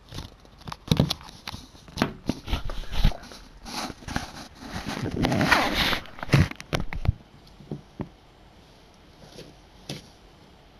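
A close run of sharp clicks and knocks with a longer rustle about five seconds in, dying down after about seven seconds.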